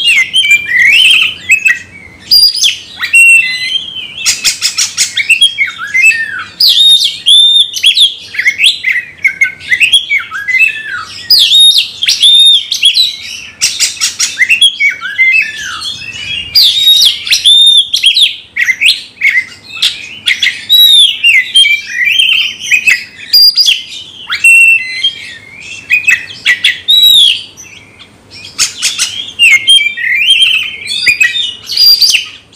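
Oriental magpie-robin singing a loud, fast, unbroken song of varied whistled phrases, broken now and then by short harsh, rasping bursts. It is the bird's aggressive fighting song (ngamuk), sung against a rival.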